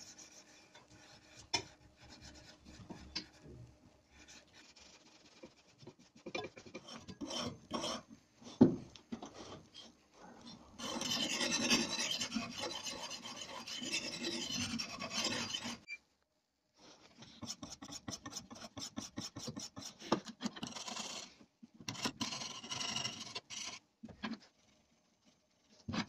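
Sharpening stone on a rod-guided sharpening jig scraping along the edge of a steel axe head made from an old saw blade. It starts as faint scattered scraping, then there is a loud steady run of gritty strokes about halfway through, a brief pause, and quick short strokes to near the end.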